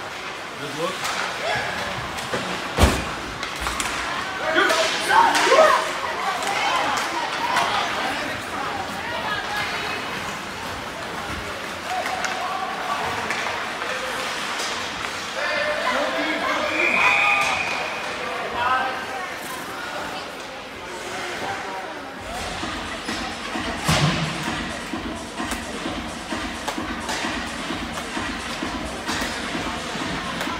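Indoor ice hockey rink during a youth game: spectators calling out, a sharp slam against the boards about three seconds in and another later on, and a short high referee's whistle a little past the middle.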